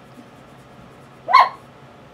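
A dog barks once, a single short bark about a second and a half in.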